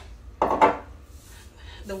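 Stainless steel mixing bowl clanking briefly about half a second in, a short metallic clatter.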